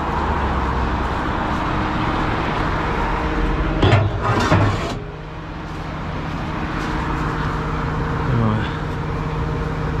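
Heavy recovery truck's diesel engine idling steadily, with the hiss of road traffic behind it.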